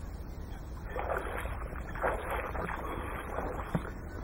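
Water sloshing and splashing in irregular bursts that start about a second in, over a steady low rumble of wind on the microphone, with one short sharp knock near the end.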